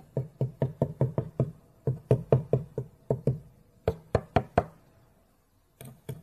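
A quick run of short, dull knocks, about five a second, then three sharper ones about four seconds in: a kitchen knife chopping down on a squishy toy doughnut.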